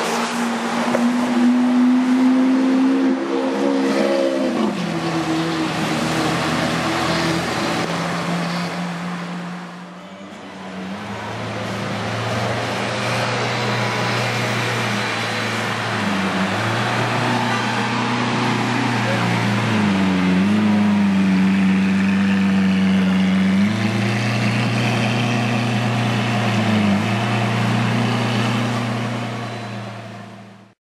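Lamborghini Aventador SV V12 engines running at low revs in slow traffic: a steady low engine drone whose pitch drops about five seconds in and wavers a few times later with light throttle. People's voices can be heard in the background.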